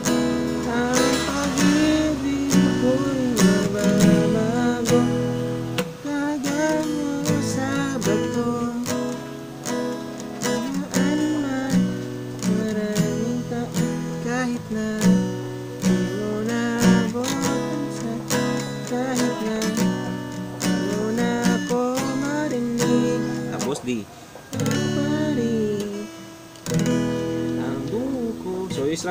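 Acoustic guitar strummed through a chorus progression of Asus2, C♯m7, Bm7, E and D, with a man singing the melody over it. The playing briefly drops off twice near the end.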